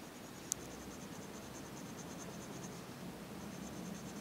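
Red colour pencil rubbing faintly and steadily on paper as it shades a rose's petals, with one sharp click about half a second in.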